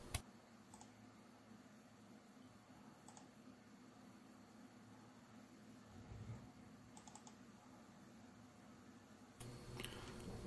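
Near silence: quiet room tone with a few faint computer-mouse clicks, spaced seconds apart.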